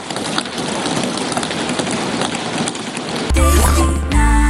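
Members of parliament thumping their desks in applause, a dense continuous patter of many knocks. About three seconds in, it is cut off by an advertising jingle with a heavy bass.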